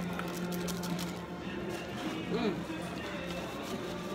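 Restaurant dining-room background: steady music with voices, a few light clicks early on, and a short hummed 'mm' a little over two seconds in.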